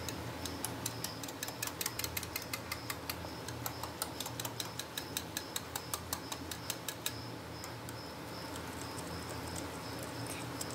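Wire whisk clicking against the side of a ceramic bowl while beating gram-flour batter with water to break up lumps: quick, faint ticks, about four or five a second, thinning out after about seven seconds.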